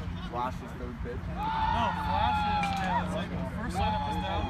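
Players' voices calling out across an open baseball field, including a long drawn-out call in the middle, over a steady low hum.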